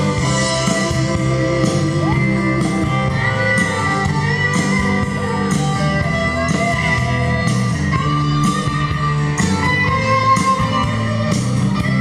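Live band playing an instrumental passage of a rock song: acoustic guitar strummed over drums, with cymbals keeping a steady beat.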